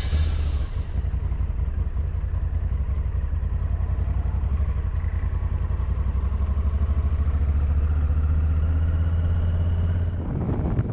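Motorcycle engine running at low speed, heard from on the bike as a steady, low, rapidly pulsing exhaust note.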